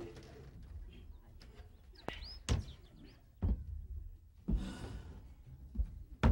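A few dull thumps and knocks, roughly a second apart, the loudest about two and a half seconds in. A click and a few short high chirps come around two seconds in.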